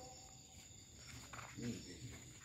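Quiet outdoor night ambience with a steady faint high-pitched tone, and a short faint pitched call, a voice or an animal, about one and a half seconds in.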